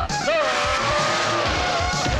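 Fight-scene soundtrack: background music with a long held tone that dips and rises gently for over a second, over low thuds of the score and fight effects.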